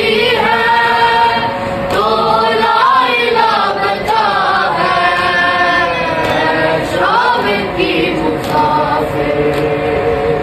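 A group of men and boys chanting an Urdu noha, a mourning lament, together in unison without instruments, the melody rising and falling in long sung lines.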